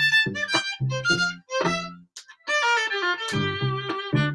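Acoustic violin with a pickup, bowed in short phrases through a Boss ME-80 delay, with deep bass notes sounding beneath the fiddle line. There is a brief pause in the playing about halfway through.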